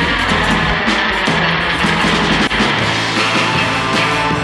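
Live rock band playing loud, heard from within the crowd: electric guitar and sustained chords over a steady run of drum hits.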